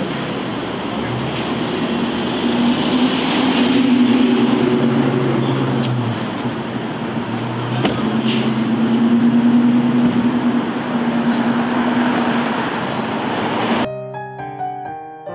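Street traffic: vehicle engines running and passing, with a steady low engine hum that swells twice, around four seconds and ten seconds in.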